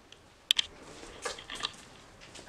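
A sharp click about half a second in, then a few soft scuffing steps: footsteps and handling noise moving over a debris-littered floor.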